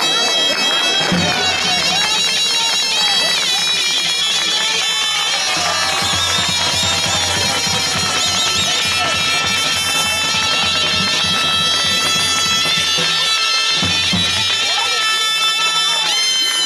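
Live Greek folk dance music: a loud, piercing reed wind instrument plays a melody over a held drone, with a daouli bass drum beating underneath. Crowd chatter runs beneath the music.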